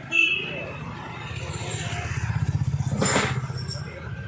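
A motor vehicle engine running with a low pulsing hum that grows louder and peaks about two to three seconds in, after a short loud sharp sound right at the start.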